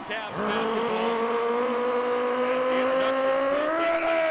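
A long, held electronic tone over the arena sound system, slowly rising in pitch and bending higher near the end, over the crowd's noise.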